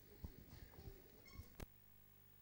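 Near silence: hall room tone with faint shuffling, a brief high squeak late on and a single sharp click just after it.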